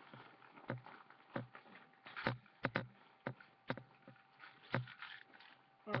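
About a dozen irregular taps and knocks from objects being handled close to the microphone.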